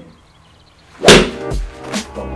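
A golf iron striking a ball off a practice mat: one sharp swish-and-hit about a second in, the loudest sound here, after a moment of near-quiet. Music with a beat starts straight after it.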